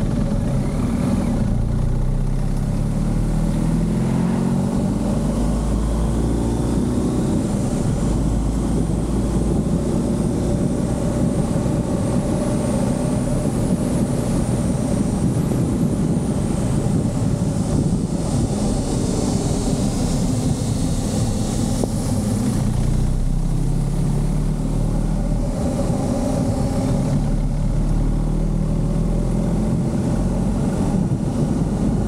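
Motorcycle engine running under way, with wind rushing past the microphone. The engine note rises as the bike accelerates in the first several seconds and again near the end, and holds steadier while cruising in between.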